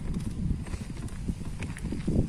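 Baby pram rolling over asphalt: a steady low rumble from the wheels with many small knocks and rattles.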